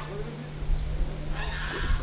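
A brief animal call in the background, over a steady low hum and low rumble.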